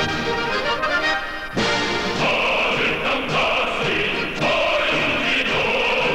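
A choir singing a Korean patriotic song in praise of Kim Jong-il, with instrumental accompaniment. A brief break about a second and a half in, then a held high choral line.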